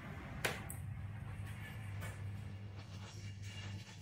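Low-voltage motor of an aluminium security roller shutter humming steadily as it opens the gaps between the slats, with a sharp click about half a second in.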